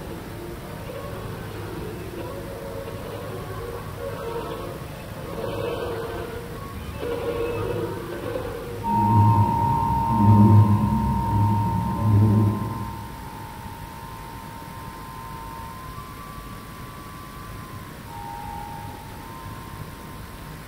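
A musical interlude: a run of mid-pitched notes, then about four loud low notes around ten seconds in under a long held high tone that dies away near the end.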